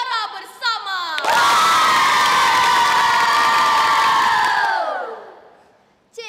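A group of children shouting together in one long, loud held cheer, starting about a second in after a few quick excited exclamations. It holds steady for about three and a half seconds, then drops in pitch and fades out.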